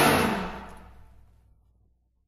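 Trombone-led big-band orchestra's final chord ringing out and dying away to silence over about a second and a half at the end of a tune.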